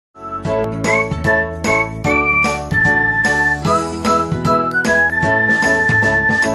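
Intro jingle music: a quick run of bright, ringing pitched notes over sustained chords, starting abruptly right at the beginning.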